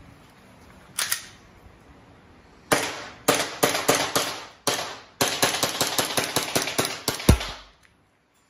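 Gas blowback airsoft pistol, a VFC Umarex Glock 45 with an aluminium slide, firing sharp shots. A single shot comes about a second in, then several spaced shots, then a fast string of about five a second. The last shot is the loudest and has a deeper thump.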